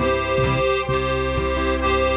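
Accordion holding a steady chord over bass notes that change about every half second, in an instrumental break with no singing.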